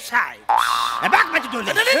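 A cartoon-style 'boing' comedy sound effect starts suddenly about half a second in, a tone that rises and then falls over a hiss. A man's voice follows.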